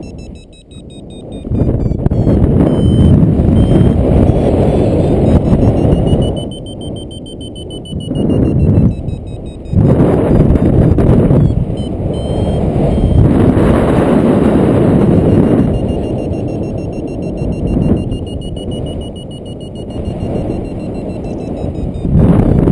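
Wind rushing over the camera microphone in paraglider flight, loud and gusting, with lulls that come and go. Under it, a faint electronic beeping whose pitch rises and falls slowly, typical of a flight variometer signalling climb.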